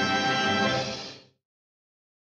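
Cartoon orchestral score playing the closing bars, a held final chord that dies away and stops a little over a second in.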